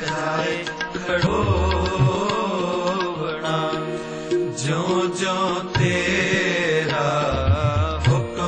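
Devotional song: a voice holding long, ornamented notes over instrumental backing, with low drum beats now and then.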